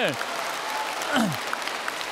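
An audience applauding: a steady patter of many hands clapping. A single voice briefly calls out with a falling pitch about a second in.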